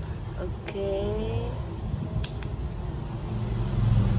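A low, steady background rumble, with a woman's short hummed vocal sound about a second in and two small clicks a little past the halfway point.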